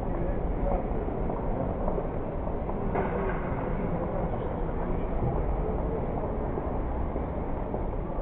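Steady background noise of a large indoor hall, with indistinct voices in it.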